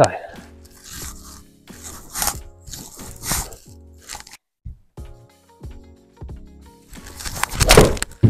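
Background music plays throughout. Near the end, a single loud strike: a golf club hitting a Bridgestone Tour B X ball off a hitting mat into a simulator screen.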